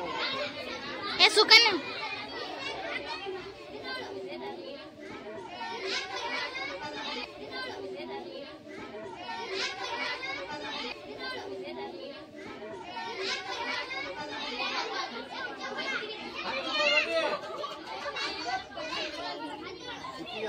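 Many children's voices chattering and calling out at once, with one loud high-pitched cry about a second and a half in.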